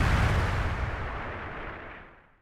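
A heavy boom sound effect, deep and full, fading away steadily over about two seconds.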